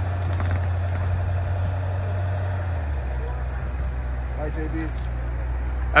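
Idling engine of a black SUV stopped at the curb: a steady low hum that drops to a lower pitch about halfway through.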